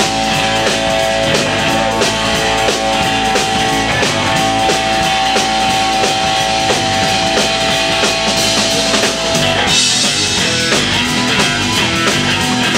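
A live blues-rock band playing an instrumental passage on electric guitars, electric bass and drum kit. A long high note is held over the band for most of the time and breaks off near the end as the cymbals get louder.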